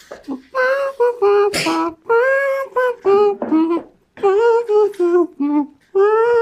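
A voice imitating a saxophone, singing a slow melody in drawn-out notes with short breaks between them.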